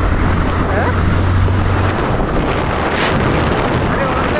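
Wind rushing over the microphone of a motorcycle cruising at about 55–60 km/h, over the engine's steady low hum, which fades about halfway through.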